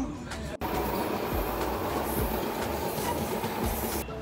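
Steady running noise of a passenger train heard from inside the carriage, cut off for an instant just after the start.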